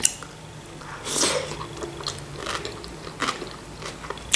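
A person chewing a mouthful of cucumber and dill salad in sour cream, with a few soft, irregular crunches. There is a short click at the very start as the forkful goes in.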